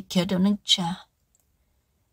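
A person's voice speaking for about a second, then cutting off abruptly into dead silence.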